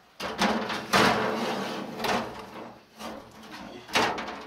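A metal rack-mount network switch is slid onto a metal cabinet shelf, scraping for a couple of seconds with a few knocks. The scrape is loudest about a second in.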